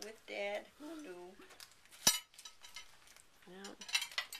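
One sharp clink of cutlery against tableware about halfway through, between stretches of soft voices.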